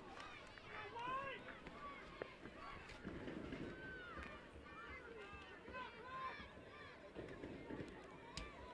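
Faint, scattered shouts and calls from players and spectators around an outdoor soccer field, short voices overlapping at a distance.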